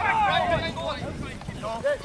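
Shouting voices of players on the pitch, calling out during play, with wind buffeting the microphone.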